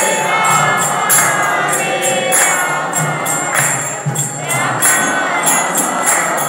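Devotional kirtan: a group of voices chanting together over karatalas (small brass hand cymbals) struck in a steady rhythm of about three strokes a second, with a low beat beneath.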